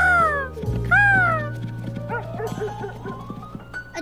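Two short dog barks about a second apart, over gentle background music with a steady low note and a slowly rising tone near the end.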